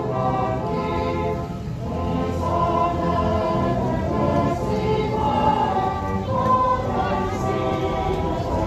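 A choir singing a Christmas carol.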